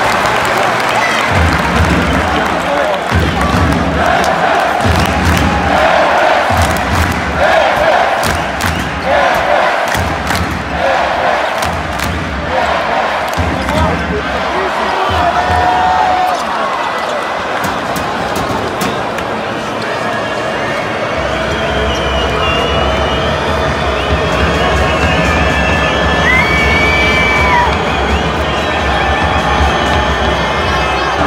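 Basketball arena crowd during live play, with music and a rhythmic pulse of about one beat a second over the first dozen seconds, and a basketball bouncing with sharp knocks on the court. Later the noise settles into a steadier crowd din with a few short high squeaks.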